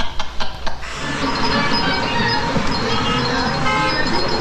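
Men laughing heartily, cut off about a second in by a loud, steady rushing noise with short, repeated high-pitched tones running through it.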